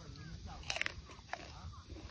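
Crisp crunching bite into a raw snow pear still hanging on the tree, the loudest crunch a little under a second in, followed by a few smaller crunches of chewing.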